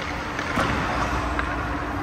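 Ice rink sound: hockey skate blades scraping across the ice over a steady hum, with a sharp knock of stick or puck about half a second in.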